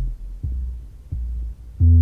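Opening beat of a 1990s Memphis rap track: deep bass notes, four of them in two seconds, each held about half a second, with little else over them.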